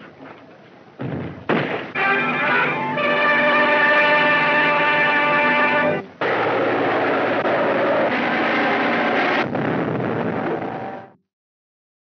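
Loud film-score music in several voices that starts about a second in after a few faint knocks. It breaks off briefly near the middle, resumes, and cuts off abruptly about eleven seconds in.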